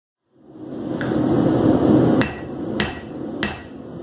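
Hammer blows on an anvil: a lighter ringing strike about a second in, then three sharp blows about 0.6 s apart, each ringing briefly. Under them is a steady rushing noise that fades in at the start.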